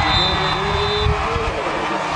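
Referee's whistle blown once, a steady high tone lasting about a second, over a crowd yelling and cheering and a low rumble.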